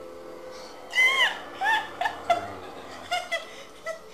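High-pitched laughter: a shriek about a second in, then a run of short squealing giggles.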